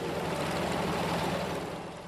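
Junkers 52 trimotor's radial engines running steadily with the propellers turning. A low engine drone with a rushing noise over it, easing slightly near the end.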